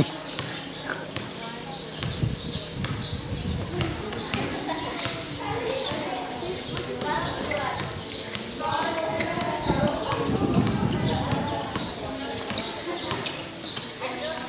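A basketball bouncing irregularly on an outdoor concrete court as it is dribbled, with players' voices calling out around the middle.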